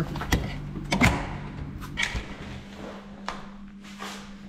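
A few separate knocks and clunks as a heavily loaded electric bike is handled through a doorway, over a low steady hum.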